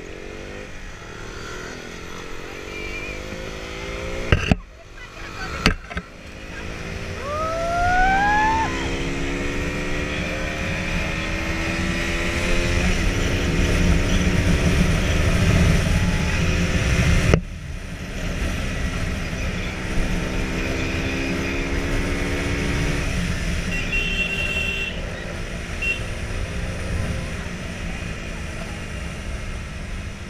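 Motorcycle engine running under way with wind rushing over the microphone. The engine note climbs steadily for several seconds as the bike picks up speed, then breaks off abruptly about halfway through. A few sharp knocks come early on, and a brief rising whistle follows shortly after.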